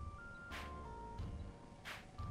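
Background music: an instrumental K-pop track, a synth melody stepping up and down in pitch over a low beat, with two sharp percussive hits about half a second and two seconds in.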